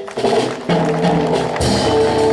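A live band playing: drum-kit strikes, one just after the start and another about a second and a half in, under sustained guitar and keyboard chords.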